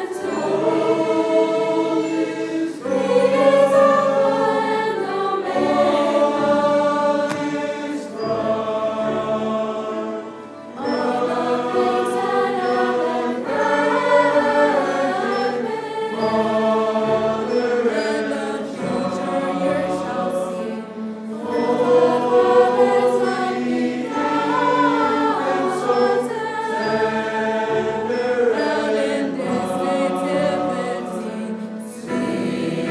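Large mixed choir singing with orchestral accompaniment, in sustained phrases, with a brief drop in volume about ten seconds in.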